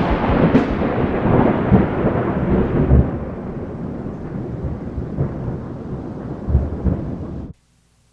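Thunder sound effect: a long rolling rumble with low thuds that slowly fades, then cuts off suddenly near the end.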